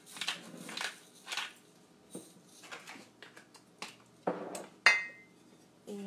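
Hand pepper grinder being twisted over a pan, giving three rasping grinds in the first second and a half and fainter ones after. About four seconds in comes a thud, then a sharp clink with a brief ring, the loudest sound.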